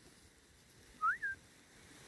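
A handler's whistle command to a working border collie: one short note about a second in, rising in pitch, then dropping to a brief held note.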